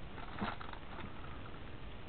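Faint rustling of a plastic postal mailer bag as it is handled, with one small crackle about half a second in.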